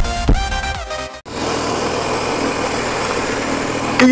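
Electronic dance music with a heavy beat for about the first second. It cuts off abruptly to the steady engine and riding noise of a motorcycle on the move, heard from an onboard microphone.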